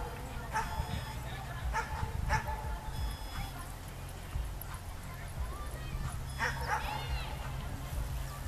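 A dog barking in short yips: several in the first two and a half seconds, then a pair near the end, over a low steady rumble.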